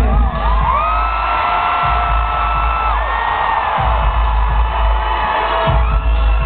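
Live rock band playing loud, recorded from within the crowd, with a heavy, boomy bass. A long high held voice rises about a second in and holds for about two seconds, followed by a shorter high note over the music.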